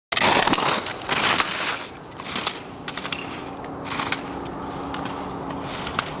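Skis scraping and carving on snow in repeated loud bursts, loudest in the first second and a half, with a few sharp clacks between turns. A faint steady hum comes in about three seconds in.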